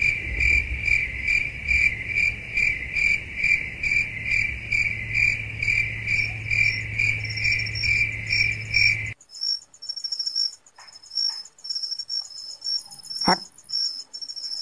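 Crickets chirping steadily at about three chirps a second over a low hum. About nine seconds in this gives way abruptly to a thinner, higher-pitched insect trill, with a single sharp click near the end.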